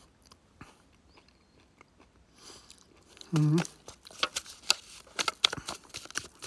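Wet clicking and smacking of a person chewing a piece of raw camel meat that is hard to chew down, in irregular clicks through the second half after a quiet stretch, with a short hummed "mm" just before them.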